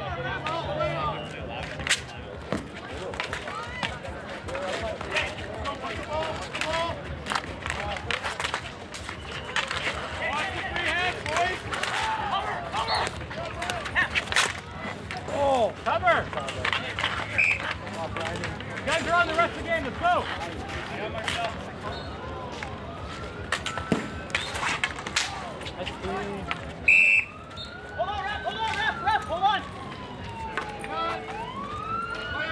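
Outdoor chatter of players and onlookers, with many sharp clicks and knocks of hockey sticks and ball on asphalt. Near the end a siren begins to wail.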